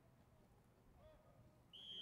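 Near silence with faint distant voices, then near the end a sports whistle starts a long, steady blast.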